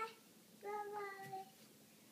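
A baby vocalising in a high, fairly steady sung tone: the end of one call at the start, then a second held call of nearly a second.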